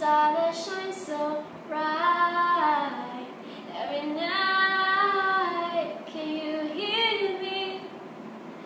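A young woman singing unaccompanied in an untrained voice, with no instruments. She holds two long notes, one about two seconds in and a longer one near the middle.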